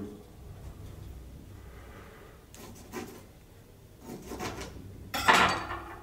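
Faint rubbing and light knocks of hands working orange pieces on a tabletop among glasses, with a short voice sound about five seconds in.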